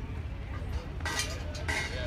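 Indistinct voices of a group of people talking over a steady low rumble, with a run of harsh, noisy bursts starting about a second in.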